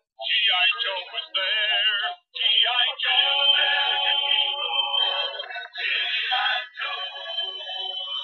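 Intro song with electronically processed, synthetic-sounding singing, with a wavering held note and a short break about two seconds in.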